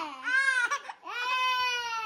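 A toddler crying: a wail that drops away at the start, a brief sobbing catch, then a second long, high wail that slowly sinks in pitch.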